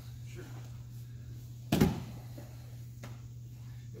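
A single sharp thud about two seconds in as a body drops onto a foam grappling mat, over a steady low hum.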